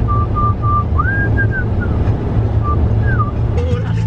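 Steady road and engine rumble inside a moving car, with a high whistled tune over it: short repeated notes on one pitch that step up and slide back down twice.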